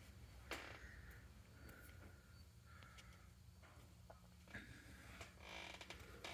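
Near silence: faint room tone with a low steady hum and a few very soft clicks.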